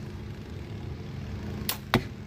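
A crossbow shooting a bolt: two sharp cracks about a quarter second apart near the end, the second louder. A lawnmower drones steadily underneath.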